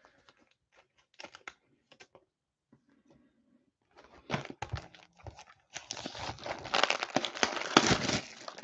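Plastic wrap crinkling and tearing as a sealed trading card box is unwrapped, after a few light handling clicks. The crackle grows dense and loud in the second half.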